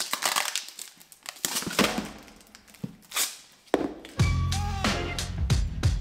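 A plastic screw-lid container being twisted open by hand, with irregular crinkling and clicking of the plastic. About four seconds in, background music with a strong bass line comes in and covers the rest.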